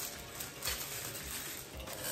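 A bundle of spoons and forks being handled in its paper wrapping: light clinks and rustling, with one sharper clink about two-thirds of a second in.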